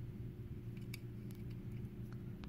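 Low room tone: a steady low hum with a few faint, short clicks scattered through it.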